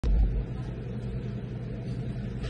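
A steady low mechanical hum, louder and rumbling for the first half second.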